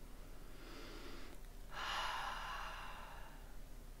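A woman breathing: a soft breath for the first second or so, then a louder, longer breath out starting a little under two seconds in.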